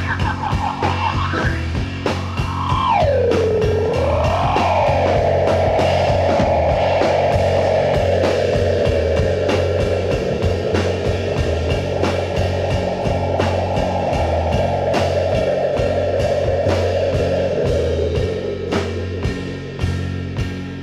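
Live rock band playing: a drum kit and bass under a lead line that swoops down and back up in pitch early on, then holds one long note that slowly sinks in pitch.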